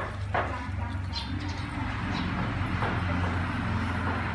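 Background ambience: a low steady hum with faint distant voices, and two sharp clicks about a third of a second apart at the start.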